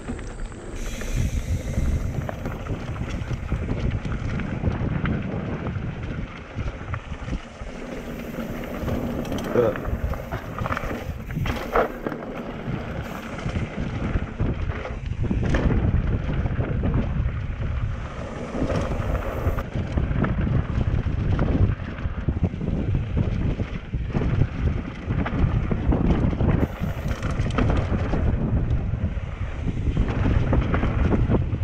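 Wind buffeting the microphone of a bike-mounted or rider-worn action camera as a hardtail mountain bike descends a dirt trail at speed. It comes with a steady low rumble of tyres and bike rattling over the ground.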